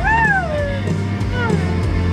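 A pop-rock song playing on a car stereo with voices singing along; one high sung note slides down in pitch near the start, followed by shorter sung phrases over a steady bass.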